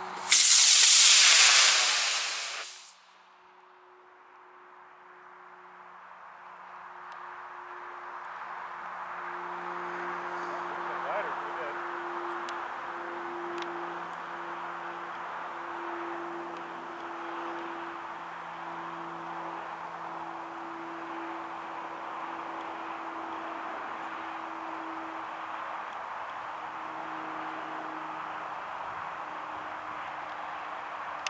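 Aerotech F-24 composite rocket motor firing on a model rocket glider: a loud hiss for nearly three seconds that fades and cuts off at burnout. After that only a faint steady hum with a low drone remains, slowly growing louder.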